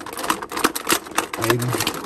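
Clear plastic packaging tray crackling and clicking in quick succession as hands grip it and tug at a tied-down accessory.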